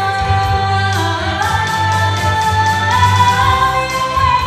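Female soloist singing into a microphone, backed by a small group of women singing harmony, holding long notes that step up in pitch twice, over a low steady bass line.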